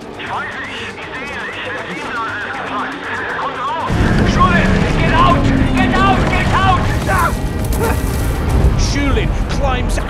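Film soundtrack of a crashed race car's fire: about four seconds in, a sudden loud boom as the wreck goes up in a fireball, followed by the steady noise of the blaze, with voices and music over it.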